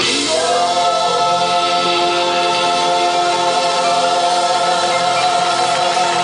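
Southern gospel vocal group singing live in close harmony with keyboard accompaniment, holding one long chord that starts just after the beginning.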